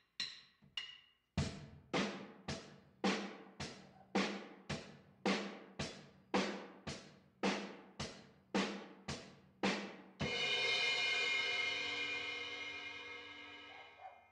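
Drum kit playing the basic rock beat at a steady tempo of about two beats a second: hi-hat on every beat, bass drum on one and three, snare on two and four, after two light taps. About ten seconds in it ends on a cymbal crash that rings out, fading, and is stopped by hand near the end.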